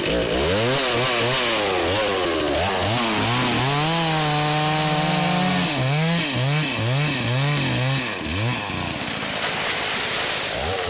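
Two-stroke chainsaw revving up and down repeatedly. It is held at high throttle for about two seconds in the middle, then blipped in quick rises and falls several times.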